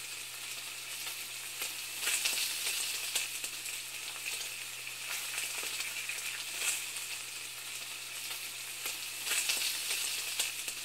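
Steady crackling hiss with frequent small pops that swell louder a few times, over a faint steady low hum.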